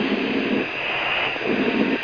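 Twin afterburning Rolls-Royce Spey jet engines of the ThrustSSC car at full power during its acceleration run, heard as a steady rushing noise through the driver's radio microphone. Short bursts of lower noise come near the start and again near the end.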